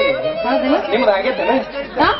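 Stage dialogue spoken into microphones over a PA, with a steady held note of background music underneath.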